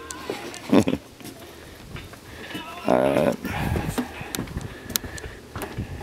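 A person's voice, briefly, about three seconds in, with a few scattered knocks around it.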